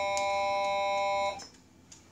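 Electronic signal tone: a steady chord of a few fixed pitches, held level, that cuts off suddenly just over a second in.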